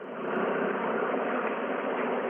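A car fire burning with a steady rushing noise, dull and muffled as if heard through a surveillance camera's microphone.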